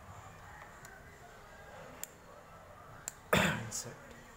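Handling of a Cat 6 RJ45 panel-mount socket and its cable: low rustling with a few small plastic clicks. Near the end comes a short, louder rush of noise.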